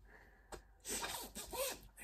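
A soft, breathy laugh from a woman, a short run of puffed breaths about a second in.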